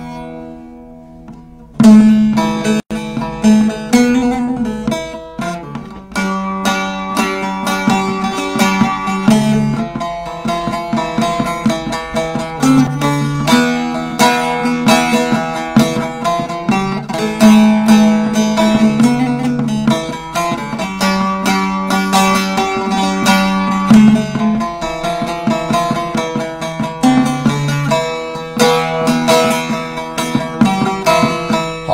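Solo bağlama (Turkish long-necked saz) playing an instrumental introduction: a fading note, then about two seconds in a loud, continuous run of plucked melody.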